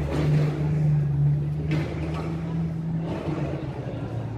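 A motor vehicle's engine running with a steady low hum over street noise. The hum drops away about three seconds in.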